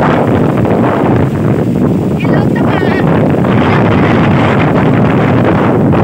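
Wind buffeting the phone's microphone: a loud, steady rushing rumble that cuts off suddenly at the end, with faint voices underneath.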